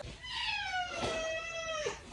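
Cat meowing: one long, drawn-out meow that slides slowly down in pitch and breaks off near the end. It is an impatient cat waiting at the door to go out.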